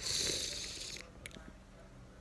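A person's breath hissing through the mouth for about a second, fading out, followed by a couple of faint clicks.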